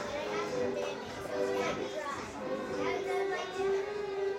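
Many overlapping voices of children and adults chattering in a large gym hall, with music playing underneath in steady held notes.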